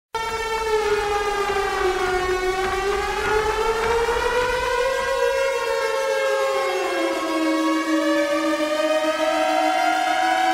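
Siren-like pitched tone in an electronic music track. It starts suddenly, wails slowly down, up and down again, then settles on a steady lower pitch as further held tones join it.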